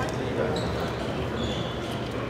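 Spectators murmuring in a large hall, with a few light clicks of a celluloid table tennis ball bouncing and a couple of short high squeaks.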